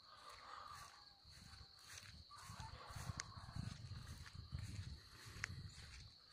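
Quiet dawn ambience: a steady high-pitched insect drone, with soft irregular thumps and rustles, louder in the second half, from the phone being handled or footsteps.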